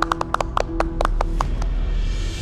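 Dramatic background music: a held drone under a quick run of about ten sharp, pitched percussive ticks in the first second and a half.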